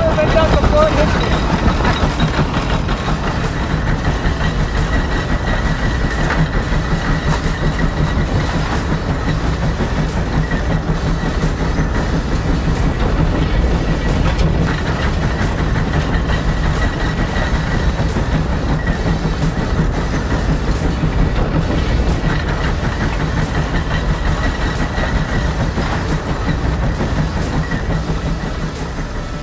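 The 150 Case steam traction engine working under heavy load pulling a 36-bottom plow: a steady rhythmic beat of steam exhaust over a continuous low rumble.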